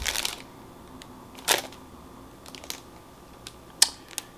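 Plastic packaging being handled: a short crinkle at the start, another about a second and a half in, light ticks between, and a sharp click near the end.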